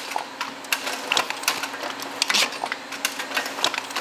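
Stainless-steel cup-filling machine dosing rice pudding into pots: irregular sharp mechanical clicks and clacks over a steady low hum.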